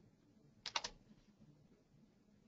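Three quick computer key clicks close together about a second in, advancing the presentation to the next slide, over faint room tone.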